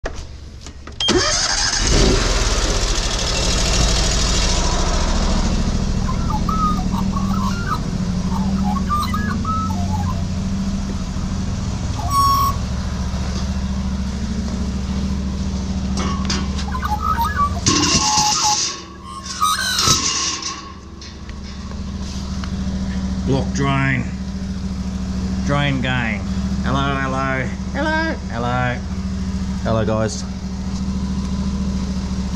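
Honda petrol engine of a van-mounted drain jetter running steadily, coming in suddenly about a second in.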